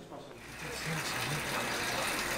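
Steady outdoor street background noise, a broad hiss over a low hum, beginning about half a second in.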